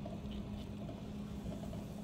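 Pot of salted water at a rolling boil, bubbling steadily, with a low steady hum underneath.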